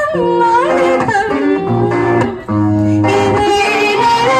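Live song: a woman singing with wavering pitch into a microphone over electric guitar accompaniment, played through a PA, with a brief dip in the music about halfway through.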